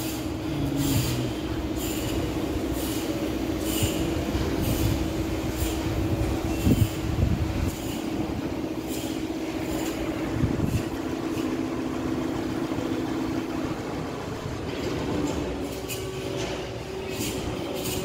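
A steady mechanical whine from a machine running on a construction site, which cuts out about fourteen seconds in. Over it come soft gritty footsteps, about one a second, on a dusty floor.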